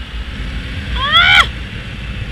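Wind rumbling on the microphone over a small motorcycle at riding speed. About a second in comes a short, loud, high call that rises and then falls in pitch.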